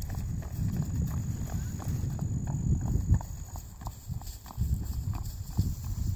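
Thoroughbred horse trotting on grass: muffled, irregular hoofbeats over a steady low rumble.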